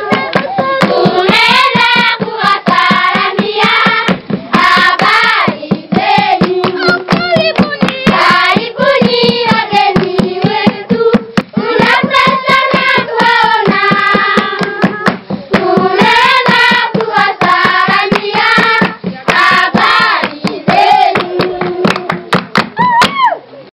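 A group of voices singing a song together in unison over a quick, steady beat of hand claps.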